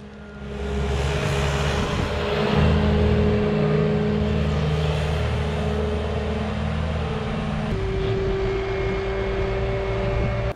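Bobcat skid-steer loader running steadily while it pushes debris, its engine note dropping a little about three-quarters of the way through.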